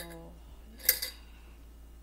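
A woman's voice trailing off, then a short, sharp clatter about a second in with a smaller one just after, like objects handled on a kitchen counter.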